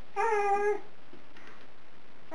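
A baby's short voiced call, one held 'aah' of a little over half a second, shortly after the start.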